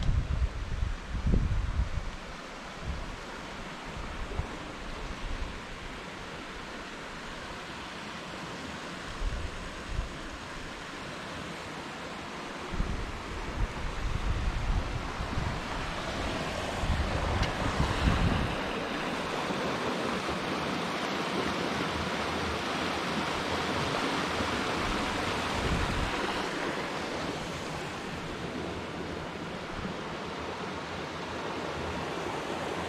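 A river running over rocks below a bridge: a steady rushing of water that grows louder about halfway through, with gusts of wind buffeting the microphone in the first few seconds and again shortly before the water grows loudest.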